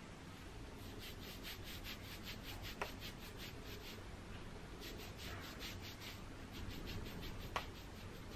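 Fingers working a liquid soap-nut and aloe shampoo mix through damp, thick curly hair: faint, quick rubbing strokes in two spells, with a small click about three seconds in and another near the end.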